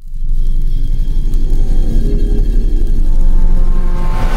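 Cinematic sound-effect rumble, deep and steady with a few faint held tones over it. It starts suddenly out of silence, as part of an animated logo sting.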